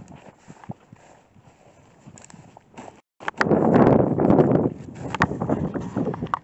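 Footsteps crunching and rustling through dry prairie grass, with many short irregular clicks of stems snapping underfoot. The sound cuts out briefly about three seconds in, then comes back louder.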